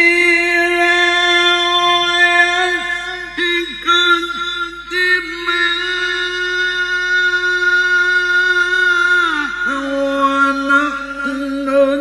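A male qari recites the Qur'an in the melodic tilawah style, sung into a handheld microphone. He holds long, ornamented notes with a short break about three and a half seconds in. About nine and a half seconds in, the pitch glides down to a lower held note.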